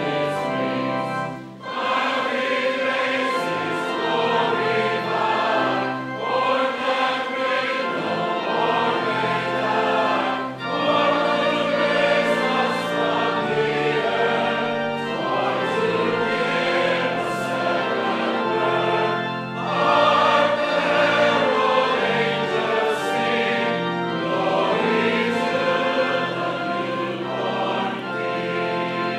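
A church congregation singing a hymn together to organ accompaniment, with held organ notes under the voices and brief breaks between lines.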